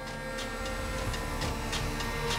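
Automated CNC router carving a beech-wood propeller blank: a steady machine hum with light ticking about three times a second.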